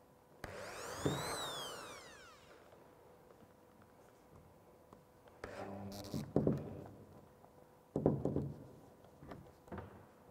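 Corded electric drill boring a hole into a wooden wall board. The motor whines up and then winds down in the first two seconds, followed by several shorter bursts of drilling in the middle and near the end.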